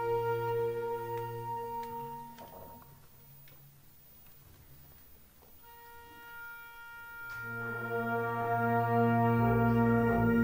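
Brass ensemble holding long sustained chords that die away a little over two seconds in; after a few seconds of near quiet, a new held chord enters softly and swells louder toward the end.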